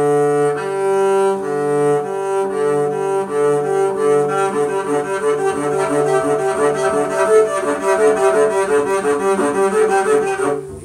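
Double bass bowed in back-and-forth strokes. The notes change about twice a second at first, then the strokes grow quicker and shorter.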